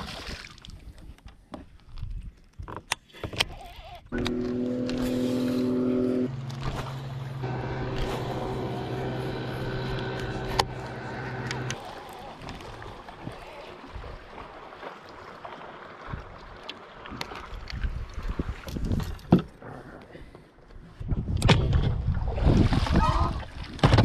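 A splash of water at the start as the released fish hits the water, then a bow-mounted electric trolling motor running with a steady hum for several seconds, its tone changing once as the speed setting changes, before cutting off.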